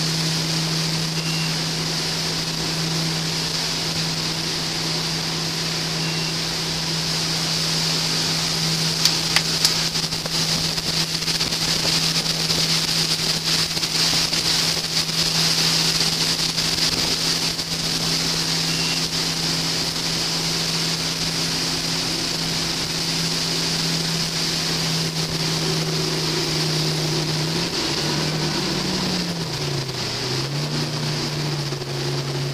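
Engine of a wakeboard tow boat running at a steady pitch under the loud rush of its churning wake and wind on the microphone. There are a few sharp knocks about nine seconds in, and near the end the engine pitch drops and climbs back.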